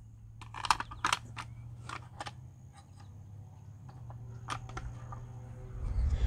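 Scattered light plastic clicks and taps from a WORX 40V electric chainsaw's side cover and tensioning knob being handled and seated by a gloved hand, with a cluster of clicks in the first couple of seconds and two more about four and a half seconds in.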